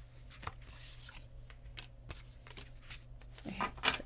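A deck of tarot cards shuffled by hand: a run of quick, irregular papery riffles and clicks.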